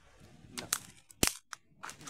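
A handful of sharp clicks and knocks from a phone being handled and turned over against its microphone, the loudest about a second in.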